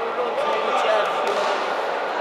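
Voices calling out across a large sports hall during an amateur boxing bout, over a steady hall din. A few faint knocks come in the first second or so.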